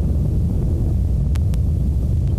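Atlas V rocket's RD-180 main engine and two solid rocket boosters during ascent: a steady low rumble, with two faint clicks about a second and a half in.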